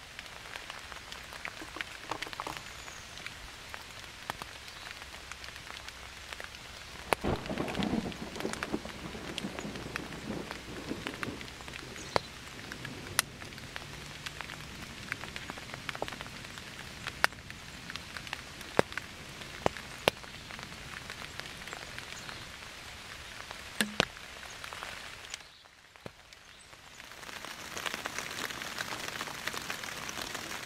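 Steady rain falling, with sharp single drop hits scattered throughout. A louder low rumble comes about seven seconds in. The rain dies away briefly about 25 seconds in and comes back louder near the end.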